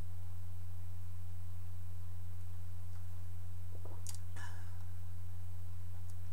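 A steady low hum, with two short mouth sounds about four seconds in as a man swallows a mouthful of beer and breathes out.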